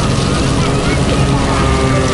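Steady city background noise: a constant traffic rumble with faint, indistinct voices in it.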